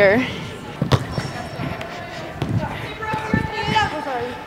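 A few dull thuds of soccer balls being kicked and bouncing on indoor turf, the sharpest about a second in, with other players' voices in the background near the end.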